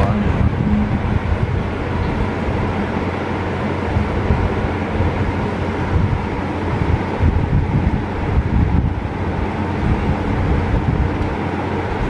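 A steady low hum with a continuous rushing noise, unbroken and even in level.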